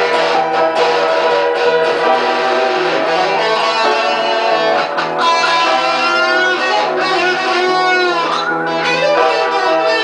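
Electric guitar through an amp playing an improvised solo in E minor over out-of-tune upright piano chords. In the second half the guitar holds sustained notes, bending them up and down with wide vibrato.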